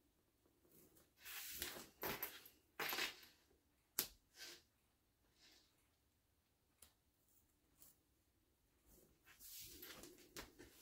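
Faint, short scratchy strokes of a pen marking a fabric square against a small ruler, several strokes in the first few seconds and again near the end, with a sharp click about four seconds in.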